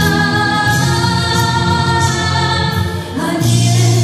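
A woman singing live with instrumental accompaniment, holding long notes over a steady bass. A little past three seconds in the music dips briefly, then moves to a new, fuller low chord.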